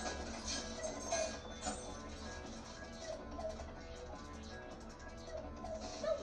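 Background music from an animated TV show's soundtrack, with sustained notes and a few light sound-effect hits.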